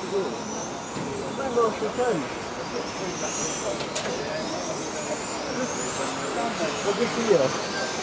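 High whine of several 1/10-scale electric RC touring cars' 17.5-turn brushless motors, rising in pitch as the cars accelerate along the track, over background voices.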